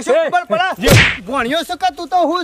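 Repeated high-pitched 'ha ha' laughter, cut across about a second in by one loud, sharp slap-like smack.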